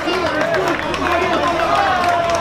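Boxing crowd shouting and calling out, many voices overlapping at once.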